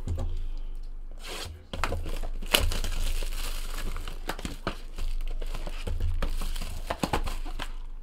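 Shrink-wrapped 2017 Bowman's Best baseball card box being torn open by hand: plastic wrap crinkling and tearing, busier from about two and a half seconds in, with a few sharp snaps.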